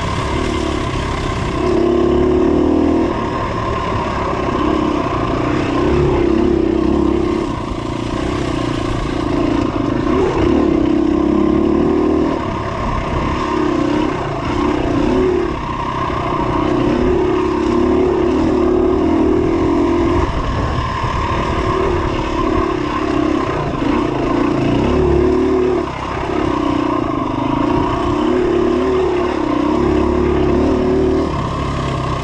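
2017 KTM 250 EXC-F dirt bike's four-stroke single-cylinder engine being ridden along a dirt trail, on and off the throttle, its note rising and dropping every second or two.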